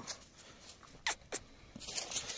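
Two short, sharp clicks about a quarter second apart, a second into an otherwise quiet stretch.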